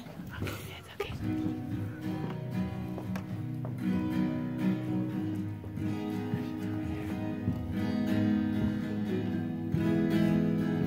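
Acoustic guitar played live, with held chords starting about a second in and growing louder from about four seconds in.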